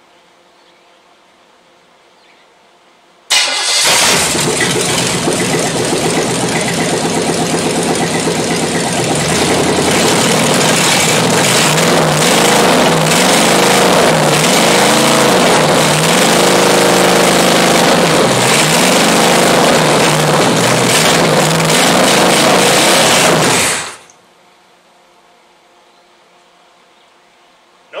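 Chevrolet small-block 350 V8 running on open exhaust manifolds with no pipes. It comes in abruptly a few seconds in, is revved up and down several times by hand at the carburetor, then stops about four seconds before the end.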